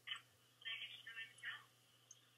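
Faint snatches of muffled speech with a thin telephone quality, played back from a recorded phone call; the words are indistinct.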